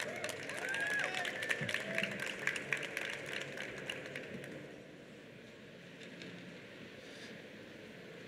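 Light scattered applause from a seated audience with faint murmured voices, dying away about halfway through and leaving a quiet hall hum.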